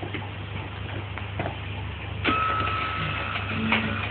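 Scattered plastic clicks and knocks as a baby bats at and handles a plastic activity toy. About two seconds in a steady high tone sounds for over a second, and near the end a run of low notes begins, the start of a tune. A steady low hum runs underneath.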